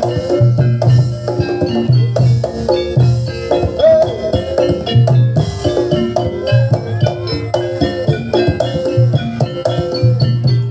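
Live Javanese gamelan accompaniment for barongan dance: drums keep a driving beat under the ringing notes of bronze metallophones, with a low pulse recurring about once a second.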